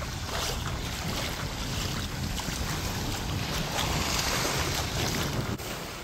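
Sea surf washing onto a beach, with wind rumbling on the microphone; the wash swells about four seconds in.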